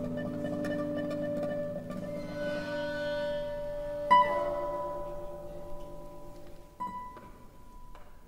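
Orchestra with solo classical guitar playing a concerto. A held string chord slowly fades, and about halfway in a sharp struck note rings on high and clear. A second, softer strike comes near the end as the music thins out.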